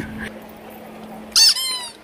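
A short, loud, high-pitched squeak about a second and a half in, falling slightly in pitch, over a low steady hum that stops just as the squeak starts.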